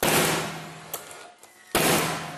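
Nail gun firing twice, driving pins into timber scotia moulding: two sharp shots about 1.75 s apart, each followed by a steady hum as it dies away, with a small click in between.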